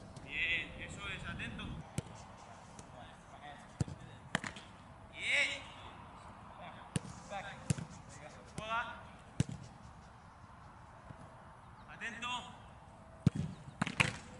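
Footballs struck hard during goalkeeper shooting practice: about seven sharp thuds of boot on ball and ball on gloves, at uneven gaps of one to four seconds. Short shouts are heard between them.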